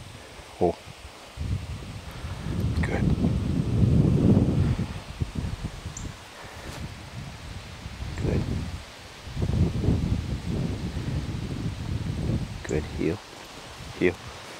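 Wind buffeting the microphone in two long, rising and falling low rumbles, the first starting about a second in and the second past the middle, with some rustling.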